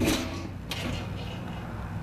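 Galvanized steel lid of a trash-can smoker being lifted off: a metal scrape at the start and another about two-thirds of a second in.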